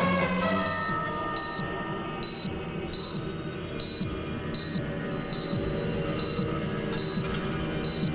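Patient heart monitor beeping steadily, a short high beep about every 0.8 seconds, over background film music.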